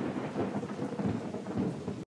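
Steady heavy rain with low, rolling thunder rumbling underneath.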